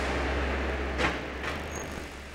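A car driving slowly into a workshop test bay, its engine running at low revs with a steady low rumble. Two light knocks come about a second in and half a second later.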